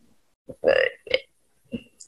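A woman's hesitant "uh" about half a second in, followed by two shorter, fainter vocal sounds, heard over a video call.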